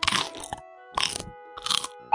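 Crunching sound effect: three crisp crunches about half a second apart, over soft background music.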